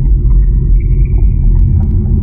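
Logo-intro sound effect: a loud, deep rumble with a faint, thin high tone held above it.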